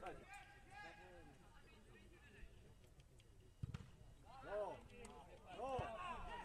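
Distant shouts of footballers calling out across the pitch, a few at the start and more near the end, with a single dull thud about three and a half seconds in.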